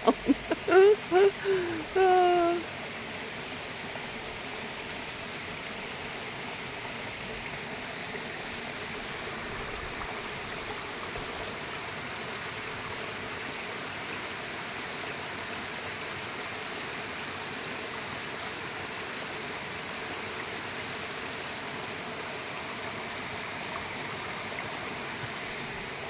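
A small woodland waterfall running steadily over rocks, its flow low after dry weather. A woman laughs over it for the first couple of seconds.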